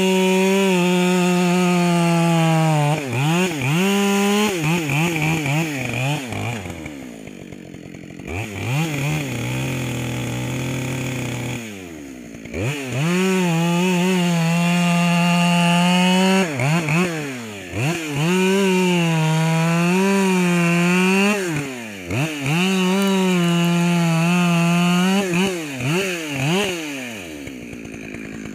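Husqvarna 572 XP two-stroke chainsaw with a modified muffler cutting through a eucalyptus log at full throttle. It makes several long cuts, the engine note dropping and revving back up between them, and falls to a lower, quieter run for a few seconds around the middle.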